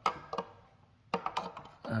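A few short, sharp clicks and knocks of hard plastic as a Coleman CPX6 battery pack and a device housing are handled, with a quick cluster of them about a second in.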